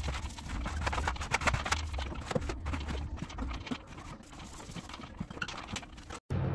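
Stiff-bristled wallpaper smoothing brush worked in quick strokes against cork wallpaper on a ceiling, a rapid, irregular run of scratchy brushing taps over a low steady hum.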